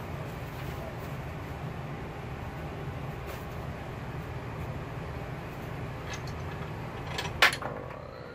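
Steady low hum of running workshop equipment, with a few light clicks and knocks from small objects being handled; a sharp click shortly before the end is the loudest sound.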